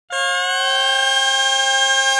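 Music opening a Macedonian folk song: one long held note from a reedy, wind-like instrument, starting abruptly and sliding slightly up in pitch over its first second.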